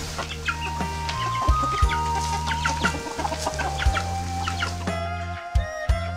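A flock of chickens clucking in short scattered calls, over background music with steady low notes.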